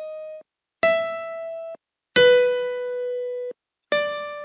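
Single piano note samples played one at a time by a Python-built on-screen piano as its keys are clicked: a note dies away early on, then three more notes at different pitches, each struck and held for about a second before stopping abruptly.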